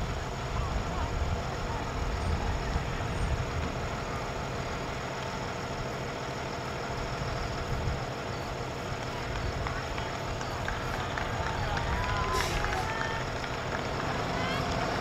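Open-air ambience: a steady low rumble with faint distant voices calling, a few brief calls standing out near the end.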